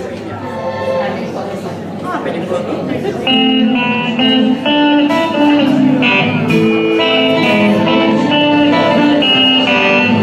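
A small band's instrumental intro to a song: electric guitar, bass guitar and keyboard play a melody in sustained notes. It starts quietly and the full band comes in about three seconds in.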